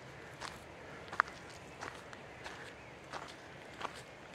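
Footsteps of someone walking on a dirt forest trail with leaf litter, at an even pace of about three steps every two seconds. There is one sharper, louder click about a second in.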